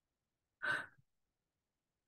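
A man's short breath, taken once about half a second in, in an otherwise silent pause between sentences.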